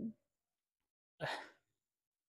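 A crying man's brief choked vocal sound, then about a second later a heavy sighing breath that fades out.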